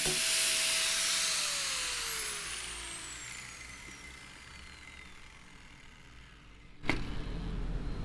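Handheld angle grinder running free and then winding down after being switched off: its whine holds steady for about a second, then falls in pitch and fades away over a few seconds. A sharp click comes near the end.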